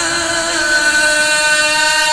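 A man's voice reciting the Quran in melodic Arabic chant, drawing out one long, steady note after a short gliding turn.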